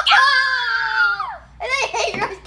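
A child's long, high-pitched squeal of excited laughter lasting about a second and a half, dropping in pitch at the end, followed near the end by a shorter cry.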